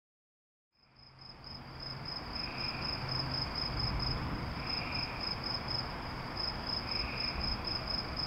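Crickets chirping in a rapid, even pulsing trill over a soft outdoor hiss. The sound fades in from silence over the first second or two, and a fainter second call comes every couple of seconds.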